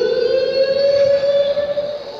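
A loud siren-like tone that glides quickly upward, then holds one steady pitch with only a slight further rise, easing off near the end, played in a large arena.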